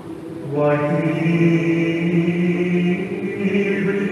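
A man's voice chanting a Syro-Malabar liturgical chant, starting about half a second in and holding long, drawn-out notes.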